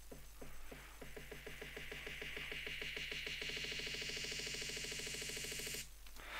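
Glitch hop build-up: a synthesized snare roll speeding up from a few hits a second to a rapid, near-continuous roll, under a white-noise riser that sweeps upward through a rising filter. Both cut off suddenly just before the end.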